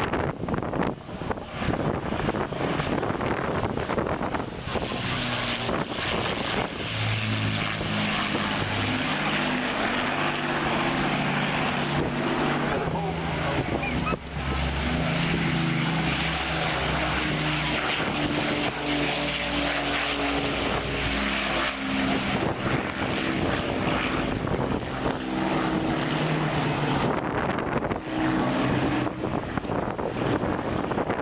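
Avro Lancaster's four Rolls-Royce Merlin piston engines droning as the bomber flies past, the drone shifting up and down in pitch. Wind noise on the microphone takes up the first few seconds before the drone comes in.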